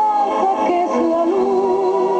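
Music with singing: long held sung notes that glide between pitches, thin in sound with almost no bass.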